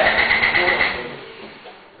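A car engine cranking over on its starter, cutting in suddenly just before and dying away over about a second and a half.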